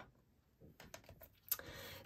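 Faint clicks and taps of paper card being handled and set down on a craft mat, with one sharper click about one and a half seconds in.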